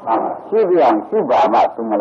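Speech: an elderly monk preaching a sermon in Burmese.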